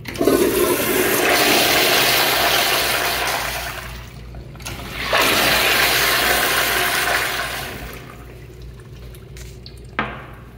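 Two flushes of commercial flushometer toilets. Each is a loud rush of water that starts suddenly and tapers off over about three seconds. The first starts just after the manual flush valve handle is pressed, and the second comes about five seconds in.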